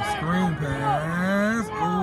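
Shouting voices during a football play: one voice holds a long yell that rises in pitch, with other voices overlapping it.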